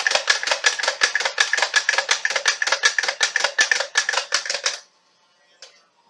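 Nerf Stockade blaster's mechanism ratcheting in a fast, even run of plastic clicks, about eight a second, as it is worked to test it after painting. The clicking stops about five seconds in, and one last click follows.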